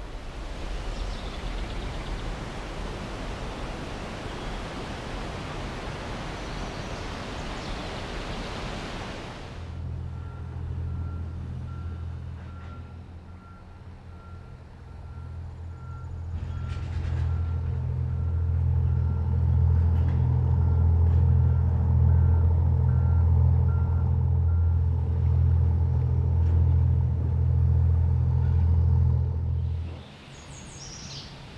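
A steady rushing hiss for the first third. It then changes abruptly to a heavy diesel vehicle engine running with a steady low hum, and a backup alarm beeping at a regular pace over it. The engine grows louder about halfway through.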